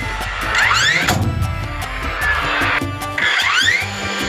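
DeWalt DCN21PL cordless 21° framing nailer driving 3¼-inch nails into stacked pine boards, twice. Each shot is a rising whine ending in a sharp strike.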